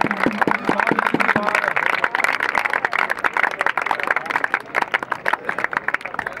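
Crowd of spectators clapping, a dense irregular patter of many hands, with a man's voice calling out over it in the first second or so.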